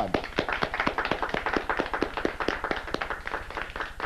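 Applause from a small group of people: many quick hand claps overlapping.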